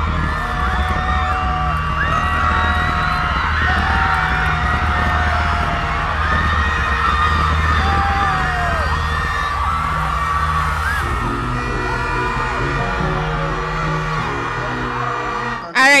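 Live concert music with a steady heavy bass, and many voices screaming and cheering over it.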